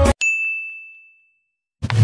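Music cuts off and a single high, bell-like ding sound effect rings out, fading away over about a second.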